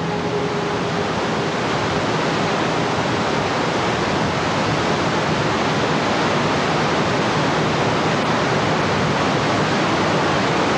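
Water rushing through Glen Canyon Dam's left spillway gates, opened for a test flow of 20,000 cubic feet per second: a loud, steady rushing noise.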